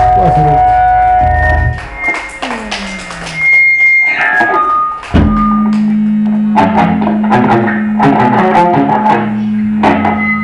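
Electric guitar and bass guitar played live in a punk band, loud and noisy: sliding notes that fall in pitch in the first half, then a steady low droning note from about five seconds in with picked notes over it.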